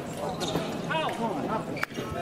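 Indistinct voices of people talking, with one sharp click near the end.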